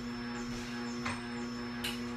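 Electric juicer motor running with a steady hum. Two short sharp clicks sound, about a second in and near the end.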